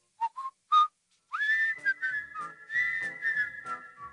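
A whistled tune: three short notes stepping up in pitch, then a long held high note that wavers, over faint rhythmic ticks.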